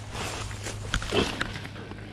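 Corn leaves rustling as the camera shifts among the flattened stalks. A sharp click comes just before a second in, then a short grunt-like sound that falls in pitch.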